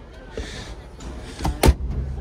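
Toyota Sienna fold-into-floor rear seat being worked: a soft knock and a brief rustle, then two sharp clunks about a quarter second apart near the end, the second the louder.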